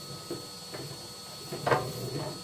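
Chimney sweep's rods being worked up and down a stove's flue liner through a dust sheet: a few short scrapes and knocks, the clearest near the end, over the steady low hum of a vacuum cleaner.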